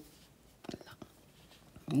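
A few faint soft clicks and rustles of a crochet hook working yarn over low room tone, then a woman's voice starts near the end.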